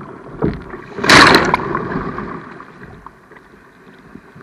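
Sea water splashing against an action camera at the water's surface: a steady rush of water, a small splash about half a second in, then one loud splash about a second in that dies away over the following second.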